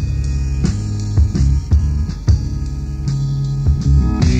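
Live progressive rock instrumental passage from an organ, bass guitar and drum kit trio: held organ chords over the bass, with drum hits.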